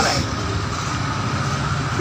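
A steady, low engine rumble with no break.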